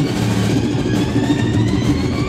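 Live rock band holding a loud, sustained low drone, with a higher tone slowly rising over it and little or no drumming.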